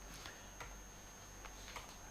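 Quiet room tone with a steady low hum and a few faint clicks.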